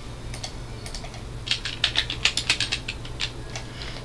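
Typing on a computer keyboard: a few scattered keystrokes, then a quick run of key clicks in the middle, over a low steady hum.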